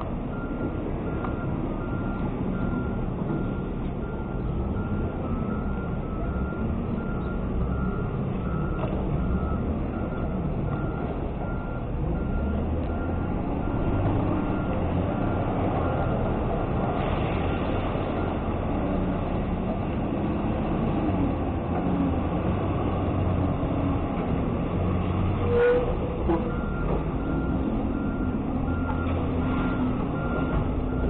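Diesel garbage truck backing up with its backup alarm beeping steadily over the engine. About halfway through, the engine grows louder and the beeping stops while the load of single-stream recycling is dumped out of the body. A sharp clank comes near the end, and then the beeping starts again.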